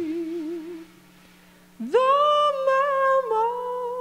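Female jazz singer's wordless vocal line: a held note with vibrato fades out within the first second, a short hush follows, then her voice scoops up into a new sustained note that steps down a little past the midpoint. A faint steady low note sounds underneath.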